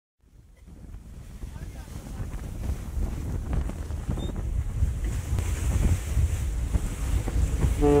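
Rush of water churning along the hull of a moving ferry, with wind buffeting the microphone and a low rumble, fading in from silence over the first few seconds. Near the end a steady pitched tone of several notes sets in.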